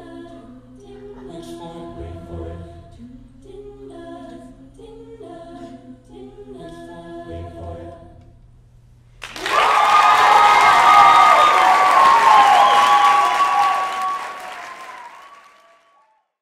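A mixed-voice a cappella group singing the last quiet phrases of a song without instruments, with a low sustained bass line, ending about eight and a half seconds in. About a second later the audience breaks into loud applause and cheering, which fades out near the end.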